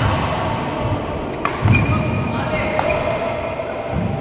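Badminton rally: rackets striking the shuttlecock with sharp cracks, one at the start and others about a second and a half and three seconds in. A heavy footfall lands on the court just after the middle one, over a murmur of voices around the hall.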